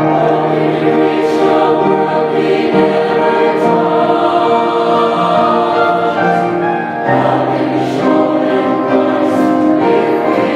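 A mixed-voice church choir singing a slow hymn in sustained chords, with a short breath between phrases about seven seconds in.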